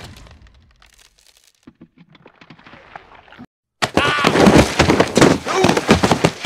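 Cartoon fight sound effects: a few faint clicks and thuds, then from about four seconds in a loud scuffle of sharp strikes and cracks mixed with yelling.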